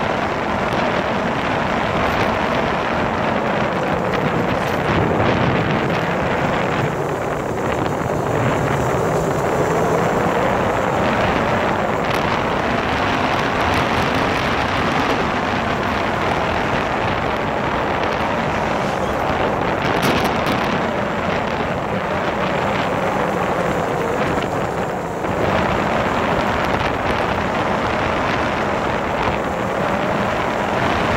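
Motorcycle engine running while riding at road speed, with heavy wind noise buffeting the microphone. The engine note rises and falls through the bends.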